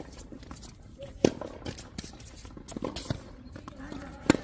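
Tennis rally on a hard court: a sharp, loud racket-on-ball hit about a second in, followed by fainter hits and ball bounces from the far end of the court, with a player's running footsteps on the court surface.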